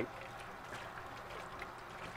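Kitchen faucet running, a faint, steady splash of tap water over a stainless mesh pour-over coffee filter held under the stream in a steel sink as it is rinsed.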